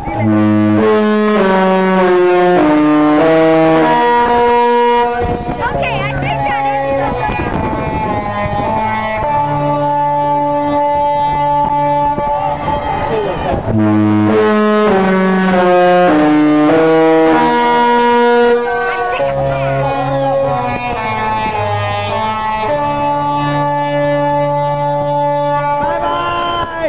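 Disney Fantasy cruise ship's musical horn playing a Disney melody in a run of stepped, held notes. The phrase sounds twice, starting again about halfway through.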